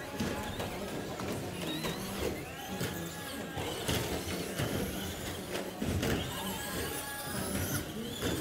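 Electric 1/10-scale RC short-course trucks (Traxxas Slash) racing: their motors whine up and down in pitch as they accelerate and pass, with sharp knocks from the trucks striking the track.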